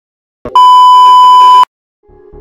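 A loud electronic beep, one steady high tone held for about a second, starting with a short click about half a second in and cutting off suddenly.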